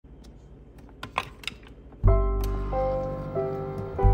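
A few sharp plastic clicks from a Keurig single-serve coffee maker as a K-Cup pod is loaded and the lid is shut. About halfway through, piano background music comes in suddenly with held notes and takes over.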